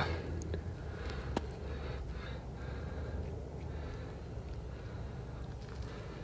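Quiet, steady low background rumble outdoors, with a single faint click about a second and a half in.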